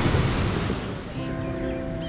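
Sea surf washing up onto a sandy beach, mixed with background music; the surf fades out about a second in and a different, quieter music track takes over.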